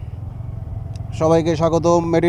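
Yamaha sport motorcycle engine running at low road speed, a steady low pulsing rumble. A man's voice comes in over it about a second in.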